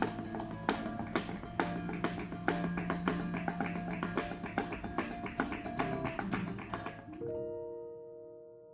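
Live flamenco: acoustic guitar playing with rapid, sharp hand claps and taps. Near the end it cuts off abruptly to a piano chord that rings on and slowly fades.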